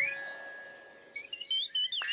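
A cartoon scene-change shimmer, like a chime, fading out over the first second. Then a cartoon chick's short, high peeps follow in quick succession near the end.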